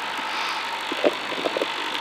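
Rally car's engine idling while the car sits stationary, heard inside the cabin as a steady hum and noise, with a few short faint blips about a second in.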